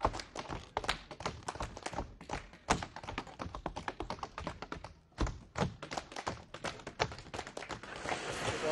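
Tap dancing: metal taps on shoes striking a hard floor in quick, uneven rhythmic runs, with a brief pause about five seconds in.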